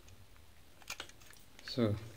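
Light clicks and taps of a screwdriver working a terminal screw on a plastic switch box, with two sharp clicks close together about a second in and a few softer ticks around them.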